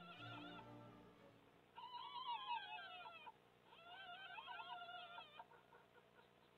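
Background music fades out in the first second. Then come two bouts of high, wavering whimpering calls, each about a second and a half long, from red fox cubs in the den.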